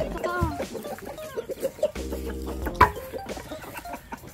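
A rooster clucking in short calls, with a single sharp knock about three seconds in.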